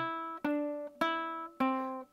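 Baritone ukulele picking four single notes about half a second apart, each plucked and left to ring out.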